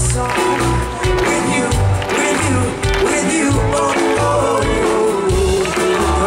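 Live pop song played through a concert PA, with a heavy low beat repeating about every half second under held tones and a melody.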